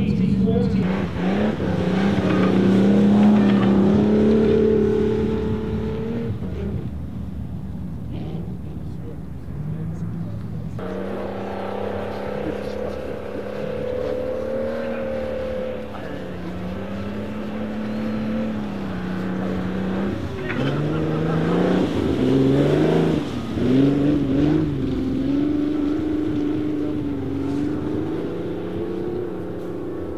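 Vintage sports-racing car engines running on a snow-covered ice track, the revs rising and falling as the cars slide through the turns. The sound changes abruptly about eleven seconds in, and there are quicker blips of throttle a little past the middle.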